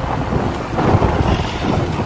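Wind buffeting the microphone of a moving scooter: a loud, gusty rumble that swells and dips.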